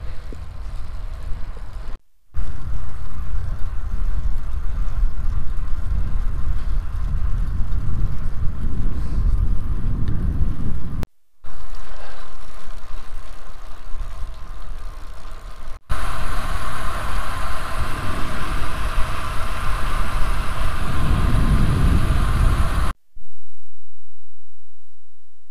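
Wind buffeting a bike-mounted camera's microphone, with tyre noise on tarmac, as a road bike rides along. The noise comes in several short clips joined by abrupt cuts, with brief gaps about 2, 11 and 23 seconds in.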